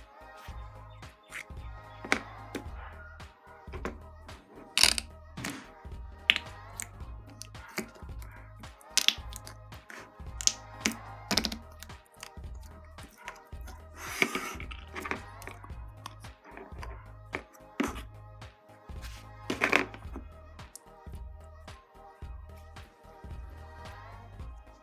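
Sticky homemade slime squeezed, poked and stretched by hand, giving irregular sharp clicks, over background music with a steady low beat.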